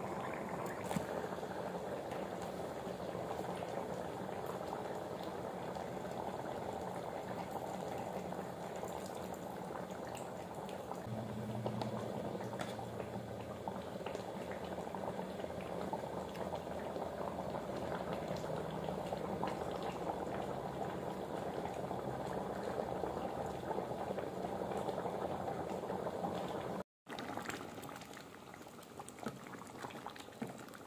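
A pot of sambar boiling on the stove, a steady bubbling, with a brief break near the end.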